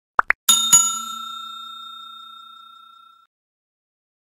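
Two quick clicks, then a notification-bell sound effect: a small bell struck twice in quick succession, ringing and dying away over about three seconds.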